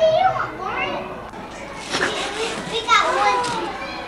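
Several young children talking and calling out at once, their high voices overlapping in a lively babble.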